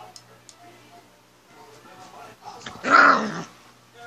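A single short, loud growl-like call about three seconds in, over faint background voices or music.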